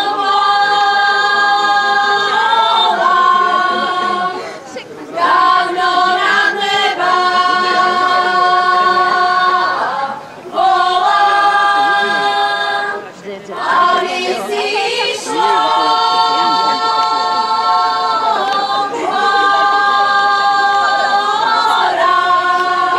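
Women's folk choir singing a Slovak folk song a cappella in several-part harmony, holding long notes in phrases of a few seconds with brief breaths between them.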